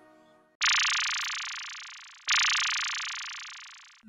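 A brief silence, then two identical bright, shimmering electronic sound-effect hits, each starting suddenly and fading away over about a second and a half, the second following the first by under two seconds.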